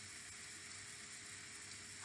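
Faint steady hiss of background room tone, with no distinct events.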